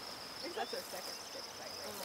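Outdoor grassland ambience: a steady high-pitched insect trill, like crickets, with a few short chirps scattered through it.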